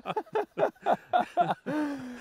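A man laughing and exclaiming without words: quick short vocal bursts, then one drawn-out 'ohh' falling slightly in pitch near the end.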